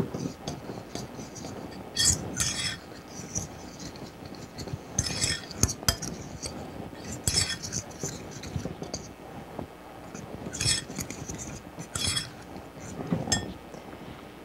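A metal spoon stirring dry flour and spices in a mixing bowl, scraping and clinking against the bowl's sides in short bursts every two or three seconds.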